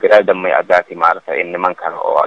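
Speech only: a man talking in quick, continuous phrases.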